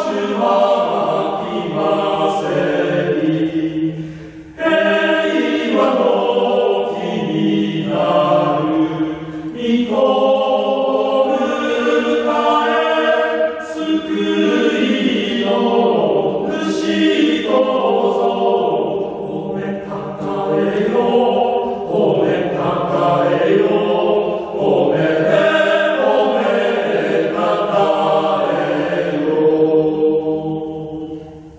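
A small male choir of about eight voices singing unaccompanied in close harmony, in long sustained phrases with a brief breath pause about four seconds in.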